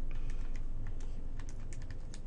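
Calculator keys being pressed in a quick, uneven run of about a dozen light clicks as a multiplication is keyed in.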